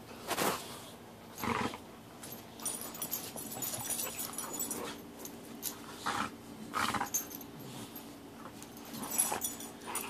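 Two American Staffordshire terrier–type dogs play-fighting, giving a few brief growls and snarls with quieter stretches between. It is rough morning play, not a real fight.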